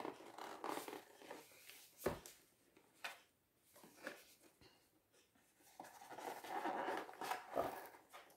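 Faint scratching and rustling of gift packaging being handled and opened by hand, with a sharp knock about two seconds in and a longer stretch of scraping near the end.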